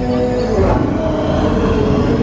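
Dark-ride soundtrack: ominous held music chords, then from about half a second in a loud, rough roar from the giant King Kong figure, with the music continuing underneath.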